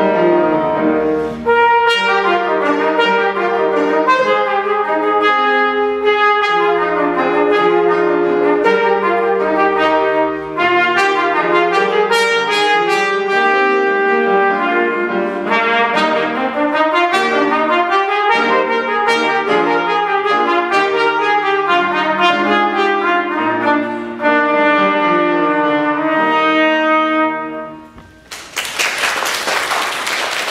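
Trumpet playing a classical theme-and-variations piece with grand piano accompaniment, the two lines moving in running notes. The music ends on a final note about two seconds before the end, and applause breaks out right after.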